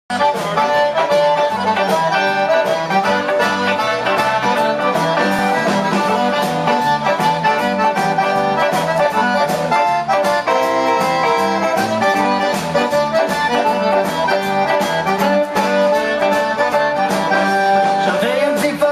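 A live Cajun band playing, led by a button accordion, with fiddle, guitar and drums keeping a steady beat.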